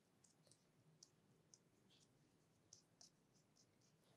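Faint, irregular soft ticks and clicks of a hand stroking and rubbing over a bare forearm, skin sliding on skin.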